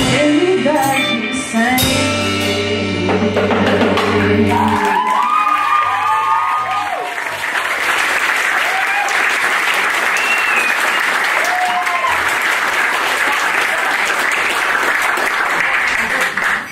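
A live rock band's song ending on a held chord with singing, which stops about five seconds in, followed by audience applause and cheering with whoops.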